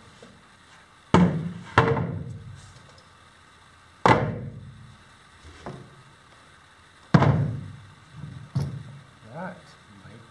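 A series of sharp thunks and knocks, four loud and two softer, each dying away over about a second, as a plastic milk crate and a fiberglass chair seat are moved and set down.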